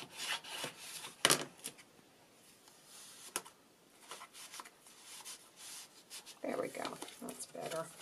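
Paper and cardstock handled and rubbed by hand, a soft rustling, with a sharp tap a little over a second in and a fainter click a couple of seconds later.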